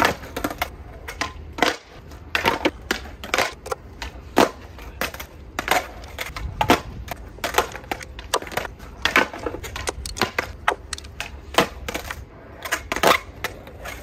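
Skateboards on a concrete skatepark: a steady low rumble of wheels rolling, broken by frequent, irregular sharp clacks and knocks of boards and trucks hitting the ground.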